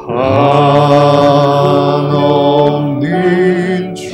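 A man singing a slow worship song, holding long sustained notes, with a new note beginning about three seconds in.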